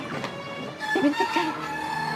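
Chickens calling, with a run of short clucks about a second in, over steady background music.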